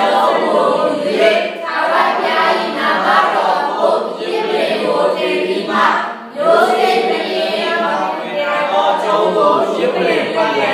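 Many voices together in unison, as from a congregation, carrying on steadily with a short break about six seconds in.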